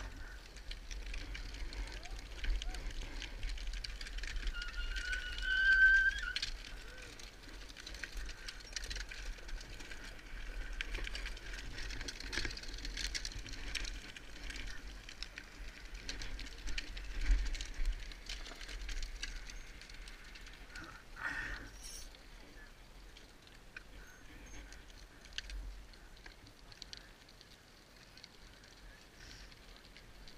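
Wind buffeting the microphone, a fluctuating low rumble. About five seconds in comes a brief high tone that rises slightly, and about 21 seconds in a short burst of noise.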